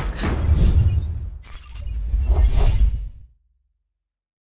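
Closing sound effect: a noisy sweep and crash over a deep bass rumble, rising in two swells and cutting off suddenly a little over three seconds in.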